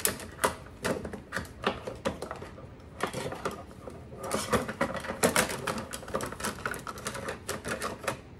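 Metal and plastic kitchen utensils clinking and clattering against each other and the drawer's utensil rack as they are handled and lifted out. Scattered clinks at first, then a busy run of rattling about three seconds in.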